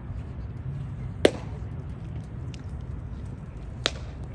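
A pitched baseball smacks into the catcher's leather mitt with a single sharp pop about a second in. A fainter snap follows near the end.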